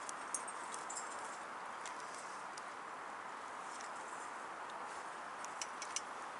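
Light crackling and rustling of dry grass and twigs burning and being pushed into a small wood-gas camping stove as its fire is being lit, over a steady faint hiss. A few sharp crackles come near the end.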